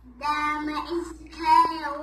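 A young girl singing solo, holding long notes in two short phrases.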